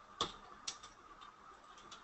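Keystrokes and clicks on a computer keyboard and mouse: one sharp click a fifth of a second in, then a few lighter, irregular clicks, over a faint steady hum.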